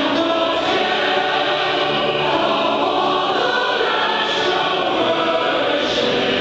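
Mixed choir of men and women singing a hymn, held steadily without a pause.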